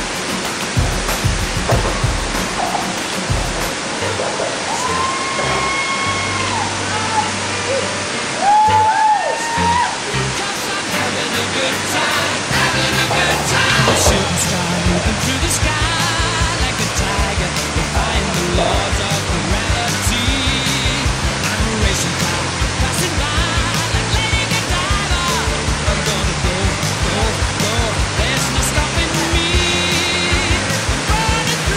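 Steady rush of water pouring over a low dam's spillway, mixed with music whose regular beat comes in about twelve seconds in.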